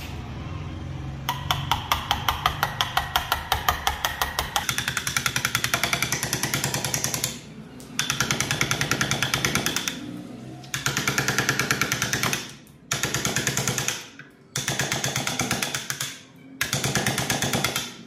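Rapid, evenly spaced knocking as a chisel is struck into a block of wood, in runs of a few seconds broken by short pauses.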